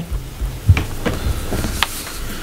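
Handling noise at a desk microphone: soft low bumps and a light rustle, with two short clicks, one under a second in and one near the end.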